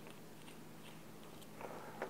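Faint clicking and scraping of a steel Allen key turning the pin screw out of a #25 roller-chain breaker tool, a little louder near the end.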